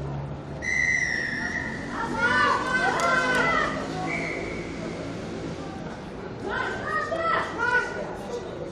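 A referee's whistle blows one long, steady blast about half a second in, then a shorter, fainter one around four seconds in. Children's voices shout in between and again near the end.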